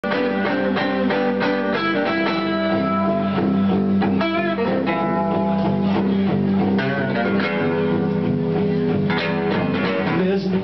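Two guitars, an acoustic and an electric, played live in an instrumental passage, with melodic picked lines over a steady low note.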